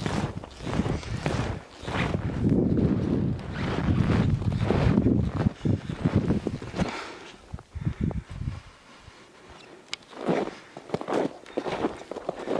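Footsteps on a packed-snow road, with wind noise on the microphone through the first half. The steps go quiet for a couple of seconds and then pick up again near the end.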